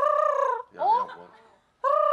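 A woman imitating an owl's hoot through cupped hands: two steady calls of about half a second each, with a short rising note between them. The attempt comes out sounding more like a chicken than an owl.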